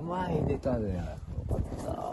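A person's voice making drawn-out wordless sounds, the pitch sliding down twice, with a few light clicks near the end.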